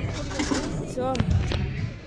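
Low rumble and thuds of a bowling alley, with one sharp knock about one and a half seconds in.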